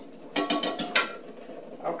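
Metal spoon clinking against a stainless steel saucepan: a few quick clinks with a brief metallic ring, in the first second.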